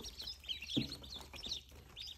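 A brood of ducklings peeping, many short high peeps overlapping without a break. There is a brief low thump a little before the middle.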